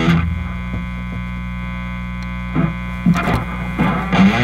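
Steady hum and buzz from a high-gain electric guitar rig, run through an HT-Dual tube distortion pedal with a vintage 12AX7, in a pause between riffs. The last chord dies away at the start, and a few short string or pick noises come through in the second half.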